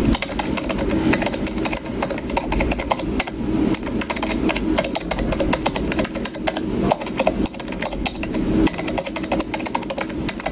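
Keyboard typing sound effect: a fast, uneven run of key clicks with a few short pauses, playing along with on-screen text that types itself out.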